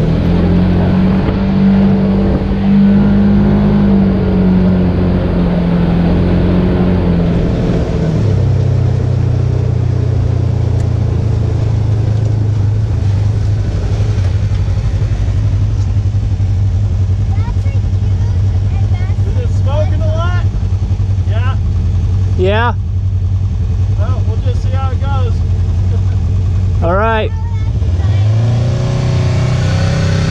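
Polaris RZR side-by-side engine running under way, then dropping to a steady idle about eight seconds in, and revving up again near the end.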